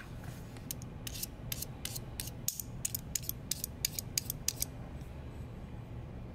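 Razor blade scraping across the scratch-resistant coated shell of a Vaporesso Gen box mod: a quick run of short, sharp strokes, about four a second, starting about a second in and stopping near the end. It is a scratch test, and the blade marks the coating.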